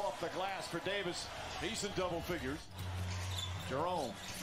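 Basketball game broadcast audio: a commentator talking over arena noise with a basketball bouncing on the court. After a cut a little over halfway in, a steady low hum takes over.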